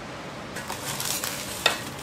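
Scraping, crackling rustle of a spatula spreading cream onto a crumb-coated donut, with a single sharp clink a little past halfway through.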